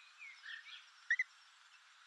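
Faint bird chirps, with one short, louder double chirp a little after a second in.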